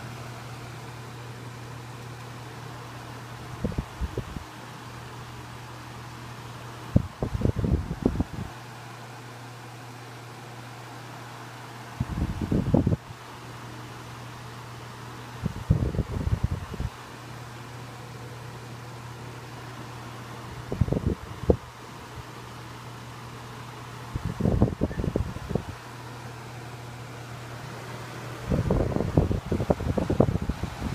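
1980s Super Deluxe Envi-Ro-Temp 12-inch oscillating desk fan running on medium with oscillation: a steady motor hum under the rush of air. A low gust hits the microphone about every four seconds as the turning head sweeps its airflow past.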